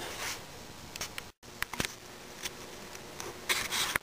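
Handling noise: soft rubbing and scraping with a few light clicks, broken by a sudden cut to silence about a second and a half in, with a louder rub near the end.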